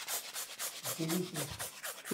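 Edible glitter being dispensed onto a buttercream cake: a quick, even run of short hissy puffs, about six or seven a second.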